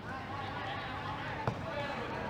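A football kicked once with a short sharp thud about one and a half seconds in, over faint outdoor pitch ambience with distant players' voices.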